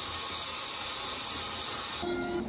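Shower spray running steadily onto wet hair and tile: an even hiss of falling water.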